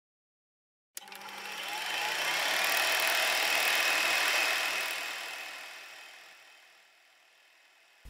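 Intro sound effect for a logo animation: a noisy swell that starts suddenly about a second in, builds for a few seconds, then fades away.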